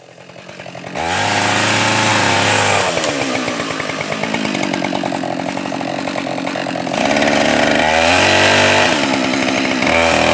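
Husqvarna 572xp 70cc two-stroke chainsaw running at high revs while cutting into a standing tree trunk. It fades up over the first second, and the engine note shifts several times as the chain loads and frees in the wood, climbing again near the end.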